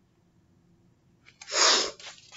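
A woman sneezes once, a single sharp burst about one and a half seconds in after a near-silent pause. It is an allergy sneeze, by her own account of her sniffles.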